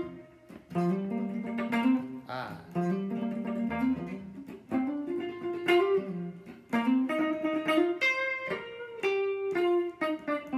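Archtop hollow-body guitar playing a short blues riff of single notes and two-note chords, repeated several times with brief breaks between phrases.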